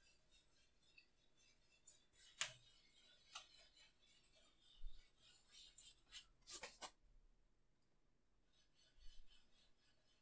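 Faint scratchy rubbing of a paintbrush working oil paint on canvas, with a sharp tick about two and a half seconds in and a short cluster of ticks near seven seconds.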